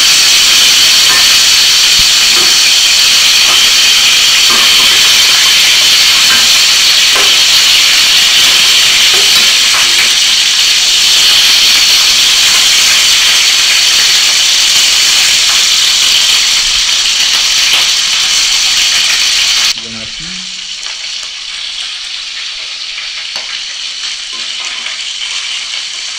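Whole cencaru (torpedo scad) frying in hot oil in a pan: a loud, steady sizzle. About twenty seconds in it drops suddenly to a quieter sizzle.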